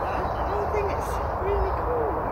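A bird giving four short, low, soft hooting calls, the third and fourth spaced like a cooing phrase, over a steady rushing noise with a low rumble. Faint high chirps from small birds come through as well.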